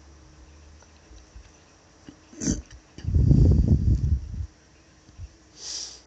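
A short, rough, low noise from a person's nose or throat, lasting about a second and a half and starting about three seconds in. A brief quieter breath comes just before it, and another breath near the end.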